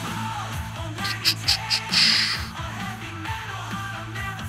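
AI-generated hard rock song playing back: a heavy, sustained low bass and guitar note under drums, with a quick run of drum hits just over a second in and a cymbal crash at about two seconds.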